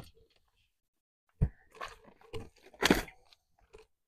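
A cardboard case of canned beer being carried and set down on gravelly dirt, with crunching footsteps. Several separate crunches and knocks, the loudest about three seconds in.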